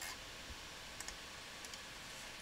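A computer mouse button clicking a few times, faint and spaced out over a steady low hiss.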